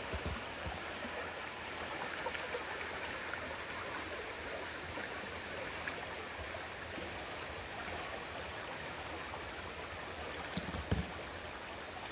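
Shallow river running over rocks and riffles: a steady rushing of water, with a few soft low knocks near the end.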